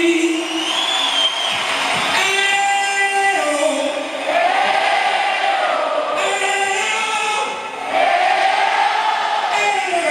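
Music with several voices singing together in long held notes.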